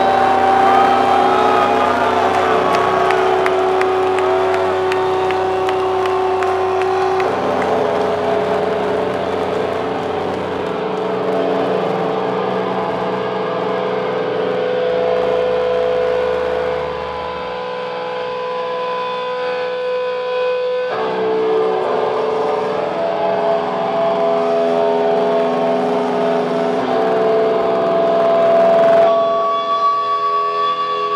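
Live industrial metal: loud, sustained distorted guitar and bass drones, with a gliding feedback tone at the start. There is no steady beat, and the held notes shift at about seven seconds, twenty-one seconds and near the end.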